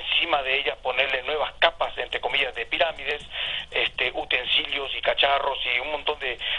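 Speech only: a person talking without pause, the voice thin and cut off in the highs like a low-quality phone or stream line.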